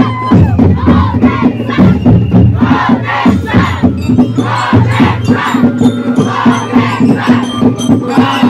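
A large group chanting and shouting in rhythm over loud Ati-Atihan festival drumming with a steady beat.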